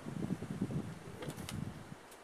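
Wind buffeting the microphone as an uneven low rumble, with a few light clicks of clothing and handling noise from someone moving right past the camera about a second in.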